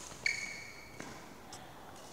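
A single high squeak of a sports shoe on the indoor court floor, lasting under a second, followed by a light tap.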